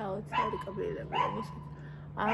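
A woman talking in Georgian, with a steady low hum underneath.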